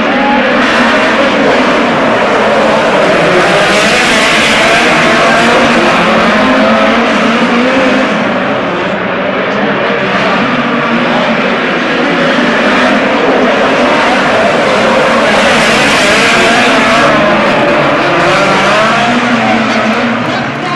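Two midget race cars' four-cylinder methanol engines running at high revs on a dirt oval. The engine note rises and falls as the cars lift for the corners and power down the straights.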